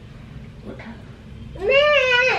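A small child's voice: one long, drawn-out high-pitched call that starts about three-quarters of the way in, rises, holds and then falls in pitch.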